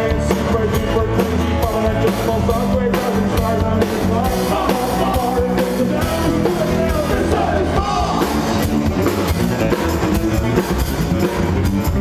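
Live rock band playing a song over the PA: drum kit, guitars and bass in a steady, continuous groove.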